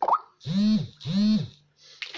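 A short pop at the very start, then a woman's voice making two short hummed sounds, each about half a second, rising and then falling in pitch.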